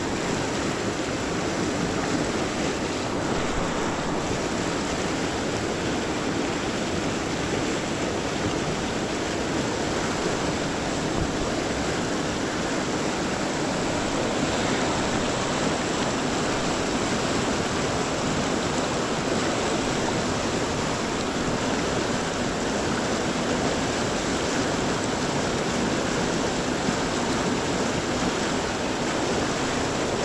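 A fast, rocky river rushing over rapids: a steady, unbroken sound of running white water.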